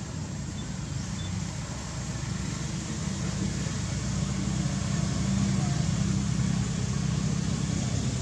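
A motor vehicle engine running steadily nearby, a low hum that grows louder about three seconds in.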